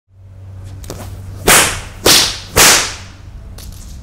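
A whip cracked three times in quick succession, about half a second apart, each crack loud and sharp with a brief fading tail, over a steady low hum.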